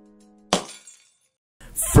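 The last chord of the intro music fades out. About halfway in comes a single crash like breaking glass, which dies away within half a second. Talking starts near the end.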